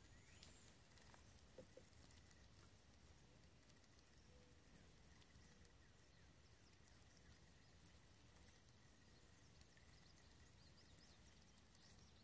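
Near silence: faint outdoor background with a thin, steady high tone.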